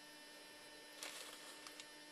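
Near silence: a faint steady electrical hum over low hiss, with a soft brief noise about a second in.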